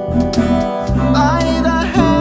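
Acoustic guitar strummed in chords over a backing track. The track carries a deep, sustained bass line and a wavering melody line above it.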